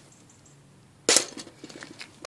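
A sharp knock about a second in, followed by a few lighter clicks and rustles.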